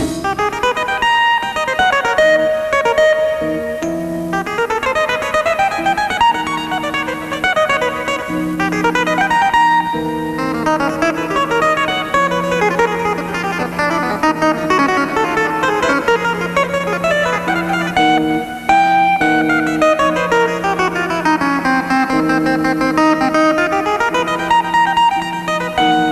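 A keyboard played live in a jazz piece: fast runs and glissando-like sweeps over held low notes, with a brief break about three-quarters of the way through.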